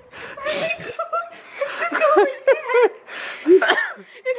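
A girl laughing in several breathy bursts, her voice breaking into short high wavering sounds between them.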